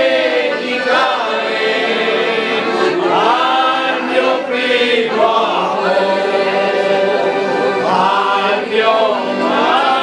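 A group of adults singing a folk song together in chorus, with a piano accordion playing the accompaniment.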